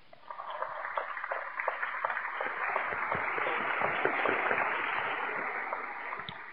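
Audience applauding: many hands clapping, swelling in just after the start, holding steady and tapering off near the end.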